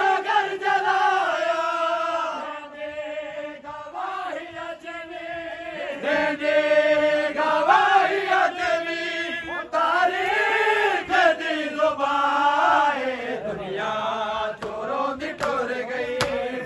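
A group of men chanting a noha, a Shia lament for Imam Hussain, together in long, drawn-out sung lines whose pitch rises and falls.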